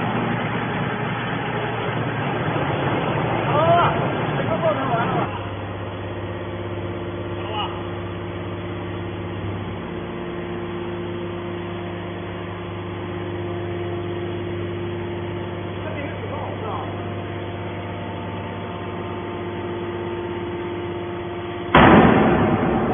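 Hydraulic metal scrap baler running: a steady electric motor and pump hum, louder and noisier for the first five seconds, with a sudden loud bang near the end.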